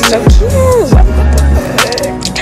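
Background music with deep, sustained bass notes under sharp drum hits and a melodic line that slides up and down in pitch.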